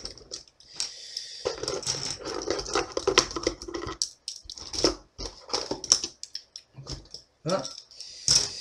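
Plastic ballpoint pens clattering and rattling against each other and the cardboard box as they are handled and pulled out in bunches, with some brief vocal sounds from the person handling them. The word "voilà" comes near the end.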